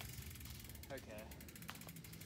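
Rear freewheel hub of a mountain bike clicking rapidly and evenly as the bike is wheeled along by hand without pedalling.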